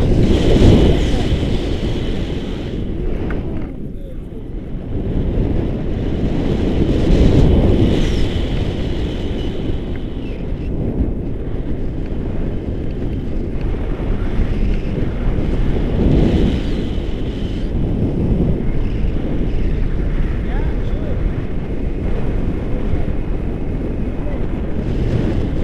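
Wind rushing over the action camera's microphone in paraglider flight: a loud low rumble that swells and eases in gusts.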